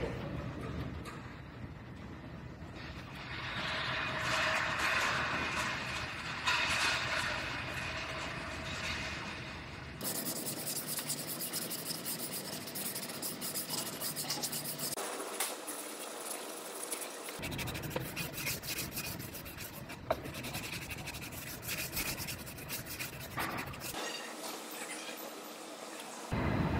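Hand sanding and rubbing on a Jeep Wrangler's front fender, scuffing the bare repair area to prepare it for body filler. It comes in several stretches of steady scratchy rubbing that change abruptly at cuts.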